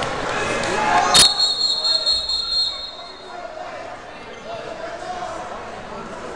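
Referee's whistle blown once about a second in: a sharp start, then a high steady tone that lasts about two seconds, stopping the wrestling. Crowd shouting and chatter come before it.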